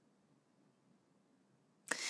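Near silence with faint room tone while a woman pauses, then a sudden sharp intake of breath near the end as she begins to speak.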